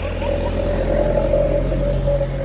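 A steady engine hum with one held tone, swelling slightly through the middle.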